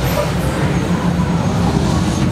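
Steady low rumble of road traffic, a continuous mix of engine and tyre noise with no single event standing out.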